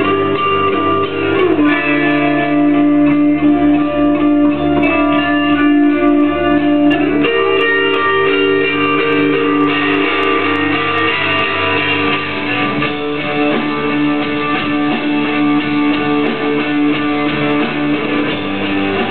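Live instrumental rock from a band of electric guitars, playing long, ringing, sustained chords that change every few seconds.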